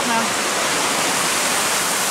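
Steady rush of a shallow rocky stream, water running over stones in a small cascade.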